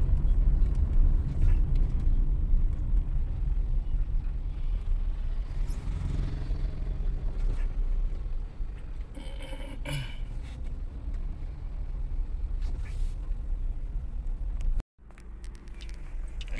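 Steady low rumble of a car's engine and tyres heard from inside the cabin while driving, with a couple of brief clicks or knocks in the middle. The sound drops out for a moment near the end, then returns quieter.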